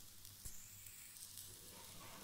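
Faint sizzle of garlic-chilli masala and coriander leaves sautéing in a little oil in a kadhai on low heat, with one soft tap about halfway.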